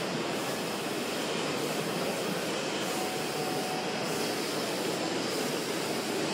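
Marchesini automatic packaging machine running, a steady continuous mechanical noise as it moves cartons along its line.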